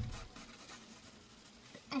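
Faint pencil scratching on paper in short, uneven strokes as someone draws, with a soft low thump at the very start.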